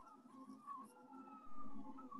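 Faint whine of a Silhouette Alta delta 3D printer's stepper motors, the pitch wavering and gliding up and down as the print head moves while printing the outline. A brief soft noise comes about three quarters of the way through.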